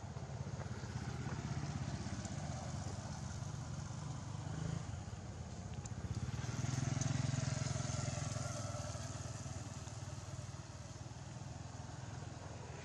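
A motor vehicle engine running steadily, growing louder about seven seconds in and then easing off again.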